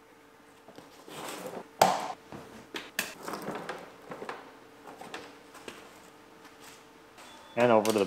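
Plastic push-pin clips being snapped into the bottom edge of a car's rocker molding by hand: rustling with one sharp click about two seconds in, followed by lighter clicks and knocks.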